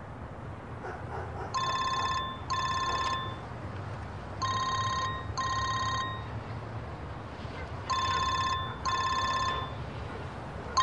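Telephone ringing in the classic double-ring pattern: three pairs of trilling rings, each pair about three seconds after the last, starting about one and a half seconds in, over a low steady hum.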